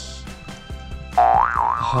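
Background music, then about a second in a loud comic cartoon sound effect: a wobbling, boing-like tone that starts to slide down in pitch near the end. It is a comic cue for a failed catch.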